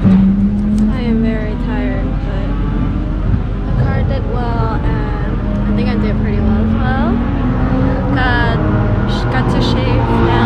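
Voices of people talking in the background, over a steady low engine hum.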